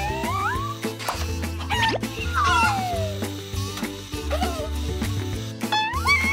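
Cartoon background music with a steady bass line, with sliding, whistle-like sound effects over it: rising slides at the start and one long falling slide a little before halfway.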